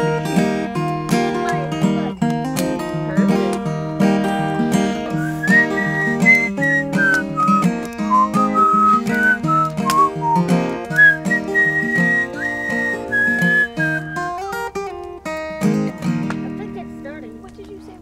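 Folk song on strummed acoustic guitar, with a whistled melody coming in about five seconds in and stopping a few seconds before the end. The music fades out near the end.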